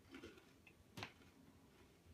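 Near silence: quiet chewing of a crispy rice-cracker snack, with one faint sharp click about a second in.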